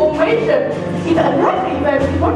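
Young actors' voices on stage, mixed with short yelping, dog-like calls, over a low steady hum from the hall's sound system.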